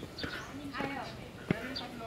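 Footsteps climbing concrete stairs, hard regular footfalls with one sharp step about one and a half seconds in, under indistinct voices talking.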